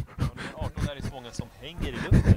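Faint voices calling out across a football pitch, with a few short soft knocks.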